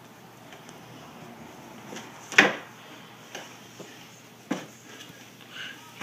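Clicks and knocks of a camera water housing's back plate being closed and secured by hand: one sharp, loud click about two and a half seconds in, then a few fainter knocks.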